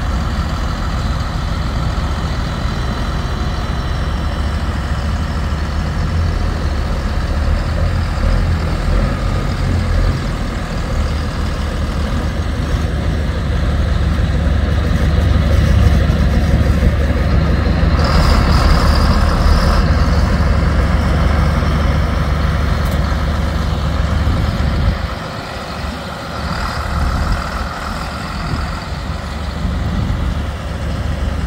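Diesel engines of two John Deere tractors and a semi truck working hard together as they try to pull the mired trailer out of deep mud, a heavy steady rumble. It builds louder through the middle and drops away about 25 seconds in, as the pull is eased off without the truck coming free.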